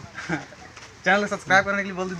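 A man's voice making two drawn-out, wordless vocal sounds about a second in, after a brief lull.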